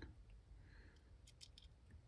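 Near silence with a few faint clicks about a second and a half in, from a red alligator-clip test lead being handled and brought to a sensor wire.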